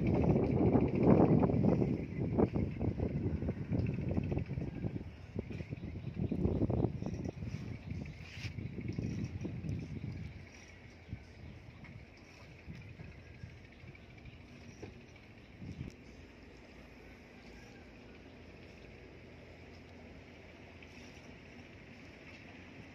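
Wind buffeting the microphone in uneven gusts for about the first ten seconds, then dropping to a quiet background with a few faint knocks.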